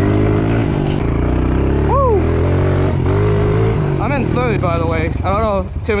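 Dirt bike engine running under way at a fairly steady pitch, riding in third gear. A short rising-and-falling vocal whoop comes about two seconds in, and the rider talks over the engine near the end.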